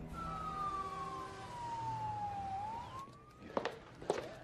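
A police siren wailing: one long tone sliding down in pitch, then turning and rising again, with a couple of light knocks near the end.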